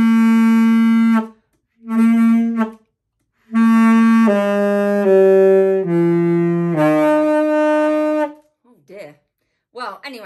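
A beginner blowing single sustained notes on an alto saxophone: a held note, a short note, then a run of about five notes mostly stepping down in pitch, with silent pauses between the phrases.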